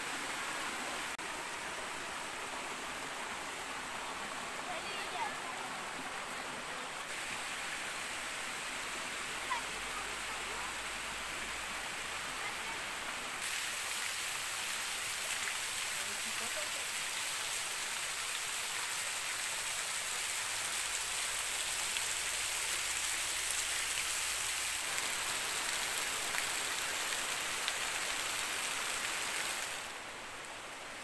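Small waterfalls splashing over mossy rock ledges into shallow pools: a steady rush of falling water that grows louder about halfway through.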